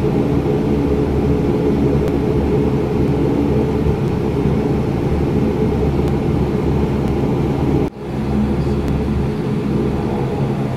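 Aircraft engines running steadily, heard from inside the passenger cabin as the plane moves along the runway: a low, even drone with a hum of several steady tones. The sound drops out suddenly for a moment about eight seconds in, then comes back.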